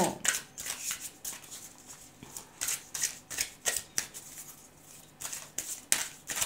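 A deck of tarot cards being shuffled by hand: a run of short, irregular papery flicks and slaps of cards against one another.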